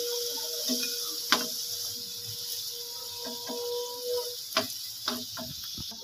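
Carrot sticks sizzling in hot oil in a nonstick frying pan, with a string of clicks and taps from a flat spatula scraping the pan as the fries are lifted out.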